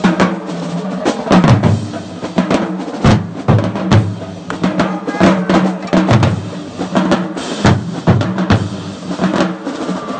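College marching band drumline playing a loud cadence: Pearl marching bass drums, snare drums and crash cymbals striking in quick repeated hits.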